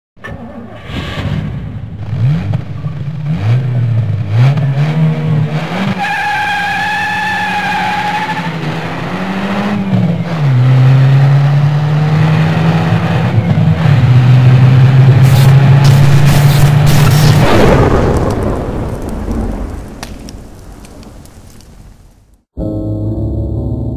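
Car engine sound effect: the revs rise and fall in short blips, then a wavering tyre squeal for a couple of seconds. The engine is then held at high revs for several seconds before a passing whoosh, and the sound fades out near the end.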